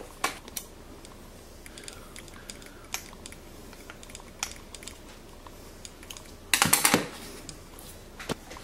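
Small clicks and light knocks of a dial indicator being handled in a wooden holder while its set screw is tightened with a screwdriver. A short rapid clatter of clicks about six and a half seconds in is the loudest part.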